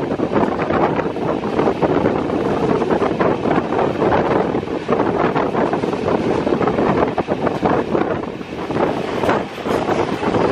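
Wind rushing over the camera's microphone from a moving passenger train, mixed with the steady rumble and rapid clatter of the coaches running over the track.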